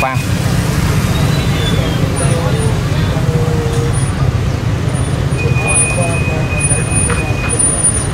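Steady rumble of mixed motorbike and car traffic crossing a steel pontoon bridge.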